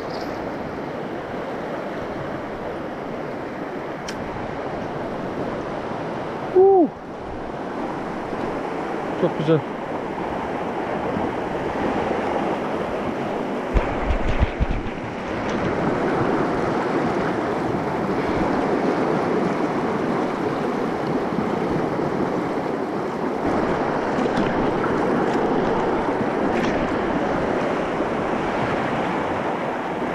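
Fast, rocky mountain trout stream rushing: a steady wash of water that grows louder about halfway through. A few brief low thumps come around the middle.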